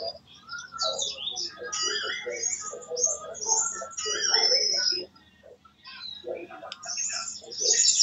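Birds chirping and singing loudly over a participant's microphone on an online call, drowning out a voice beneath. The chirping stops for about a second a little past the middle.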